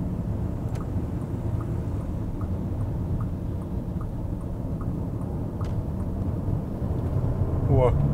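Road and engine noise inside the cabin of a Bentley Bentayga First Edition at highway speed: a steady low rumble with faint ticking about twice a second. Near the end the twin-turbo W12's note swells as the car starts accelerating hard.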